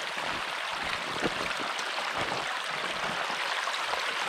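Running water of a small mountain stream: a steady rush with scattered small splashes and trickles.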